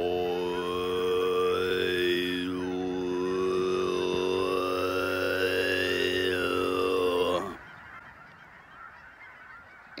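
A man's deep, bellowy meditation chant: one low note held steadily on one breath, the vowel shaping making the overtones sweep up and down. It ends about seven and a half seconds in.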